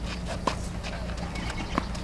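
Tennis rally on a clay court: two short knocks of the ball, about a second and a half apart, one about half a second in and one near the end, over a steady low hum.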